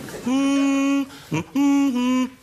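A voice singing unaccompanied: two long held notes with a short syllable between them, the second note dipping slightly in pitch, the opening of a Finnish Eurovision song.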